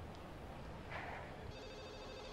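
Quiet room tone, then from about a second and a half in a faint, steady telephone ring in the background.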